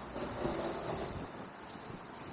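Street traffic noise with a swell about half a second in that fades within a second, as a vehicle passes close by.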